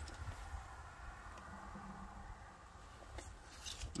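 Quiet background with a steady low rumble, a faint brief hum about halfway through, and a light click near the end.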